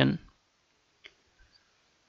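A single short computer mouse click about halfway through, with near silence around it.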